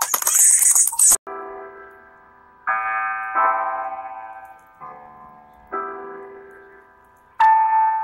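A loud, harsh noisy sound cuts off abruptly about a second in. It is followed by slow piano-style keyboard chords, six in all, each struck and left to ring and fade, the last one the loudest.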